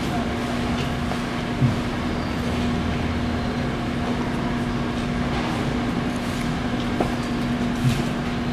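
A steady mechanical hum with a constant low tone, unchanged throughout, and a couple of faint knocks.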